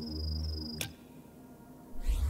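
Animation sound effect: a low, buzzing hum with a thin high whine over it, cutting off with a click just under a second in.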